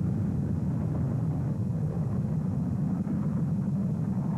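Twin-engined Gloster Meteor jet rolling along the runway, its engines giving a steady low rumble.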